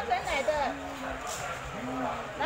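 Indistinct voices talking in the background, with a low steady drone underneath.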